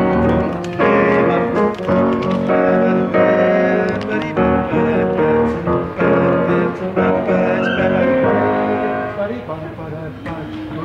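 Grand piano playing a rhythmic groove of full chords, the chord changing about every second, a little softer near the end.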